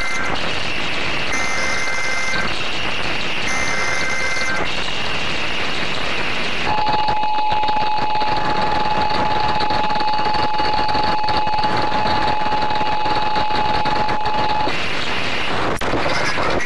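Emergency Alert System tornado-warning broadcast: two more short buzzy SAME header data bursts about a second long each, with another just ending as it starts, then after a short gap the steady attention tone held for about eight seconds. Everything sits under a constant layer of distortion noise.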